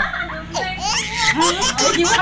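Women laughing and talking over one another.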